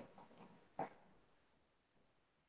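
Near silence: room tone, with a faint, brief sound just under a second in.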